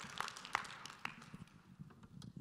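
Audience applause dying away, thinning to a few scattered claps.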